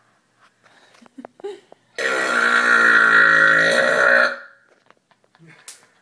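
A person's long, loud burp, starting about two seconds in and lasting a little over two seconds.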